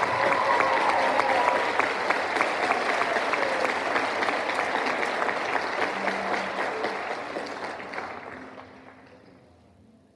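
Audience applause, many hands clapping, fading out over the last few seconds.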